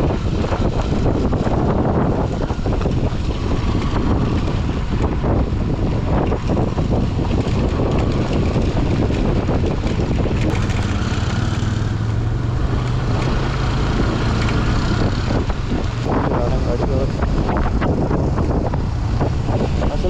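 Motorcycle riding over a rough gravel road, heard from a camera on the rider: the engine runs under heavy wind buffeting on the microphone, with frequent knocks and rattles from the bumpy surface.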